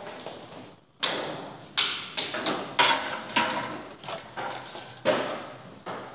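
A run of irregular sharp knocks and clatters, about eight over four seconds, each dying away quickly. They start after a brief dropout about a second in.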